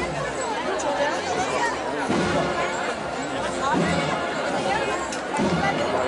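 Crowd chatter: many people talking at once, with overlapping voices.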